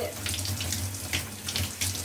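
Water from a handheld mist shower head spraying in a soft stream onto a face and splashing down, a steady hiss broken by small splashes.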